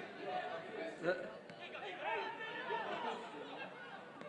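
Speech only: several voices talking over one another, with a louder "yeah" about a second in.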